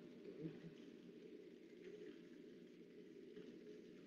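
Near silence: a faint, steady low hiss of room tone.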